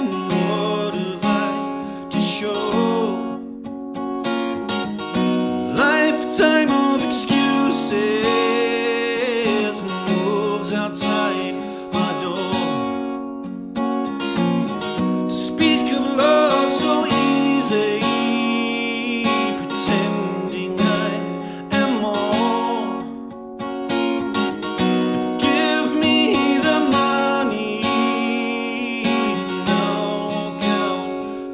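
A man singing to his own strummed acoustic guitar in a live folk performance.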